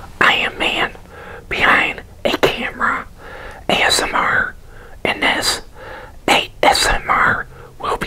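A man whispering close to the microphone, in short phrases.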